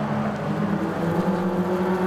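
Several BMW E36 Compact race cars' engines running steadily under load through a corner. A higher engine note joins about halfway through and climbs slightly as a car accelerates.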